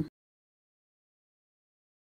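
Silence: the sound track drops to nothing right after the cut-off end of a spoken word.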